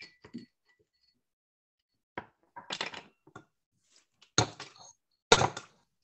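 Scattered knocks and clinks from someone moving things about in a home bar and kitchen, with two louder sharp knocks in the second half.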